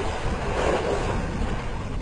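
A steady rush of splashing water as a lioness bounds and plays in a river.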